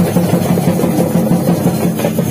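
Loud, fast drumming from a festival drum band, with a steady low band of sound running under the beats.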